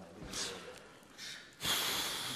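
A man's breath while he hesitates: two short puffs of breath, then a loud, long exhale starting about one and a half seconds in.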